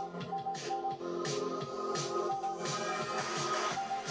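Music with a steady beat playing from a Monster Boomerang neckband Bluetooth speaker worn around the neck.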